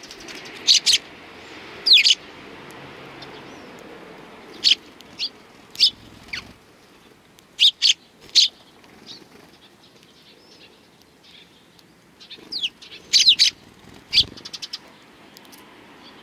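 Eurasian tree sparrows giving short, sharp chirps, singly and in quick clusters of two or three, while feeding from a hand. A brief low bump comes near the end.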